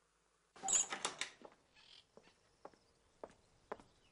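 A sudden burst of rustling about half a second in, lasting about a second, followed by four or five light, sharp clicks roughly half a second apart.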